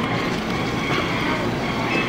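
Steady background din around claw machines: a continuous wash of noise with faint electronic tones running through it, and no single event standing out.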